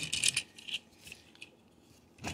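Light plastic clicks and rattles from a Transformers Legacy Burnout action figure's joints and parts as its legs are moved by hand: a quick run of small clicks in the first second, then faint handling.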